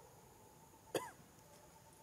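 A single short cough, about a second in, with a brief falling pitch, over a faint steady background.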